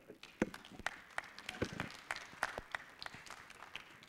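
Audience applauding: a scattering of hand claps that thins out toward the end.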